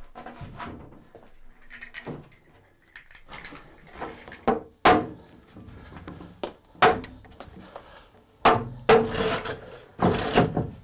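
A large plywood flood board being shifted and knocked into the wooden rebate of a cellar door. Several sharp wooden knocks and thumps, the loudest about five, seven and eight and a half seconds in, and a scraping of the board near the end.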